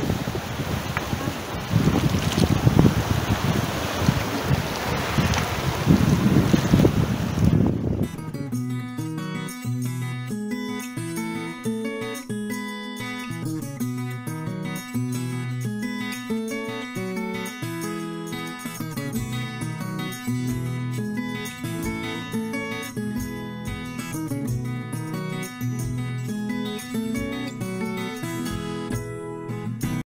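Sea waves washing over shoreline rocks, with wind buffeting the microphone. About eight seconds in this cuts off abruptly and gives way to instrumental music.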